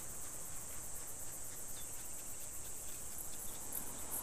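Insects chirring steadily, a high-pitched continuous sound with a fine rapid pulse, over faint outdoor background noise.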